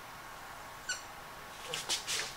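A marker squeaking once, briefly and rising in pitch, as it is drawn across a whiteboard, about a second in, over quiet room tone.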